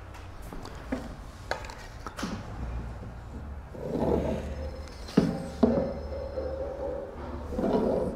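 Whiteboard marker squeaking as it is drawn along a long wooden ruler to rule straight lines on a whiteboard, in several strokes. A few light taps early on and two sharp knocks of the ruler against the board a little after five seconds in.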